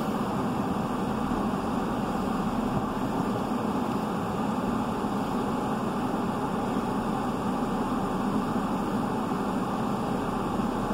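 Steady car cabin noise heard from inside the car: an even hum and hiss with no distinct events.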